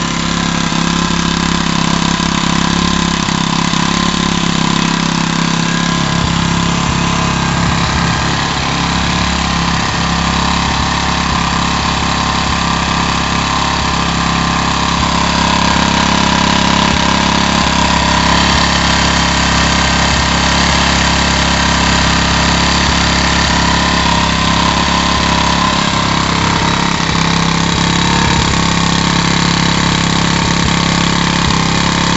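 A freshly rebuilt small Branco single-cylinder stationary engine running steadily, getting slightly louder about halfway through. It runs well, though its governor has not yet been fine-tuned.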